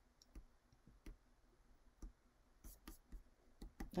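Near silence with about eight faint, scattered clicks.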